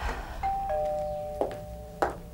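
Two-tone doorbell chime: a higher note about half a second in, then a lower note just after, both ringing on and slowly fading. A brief burst of noise comes at the start and a click partway through.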